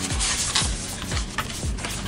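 Background music with a steady beat, about two or three hits a second, and a couple of short rustles of a rolled-up paper print being handled.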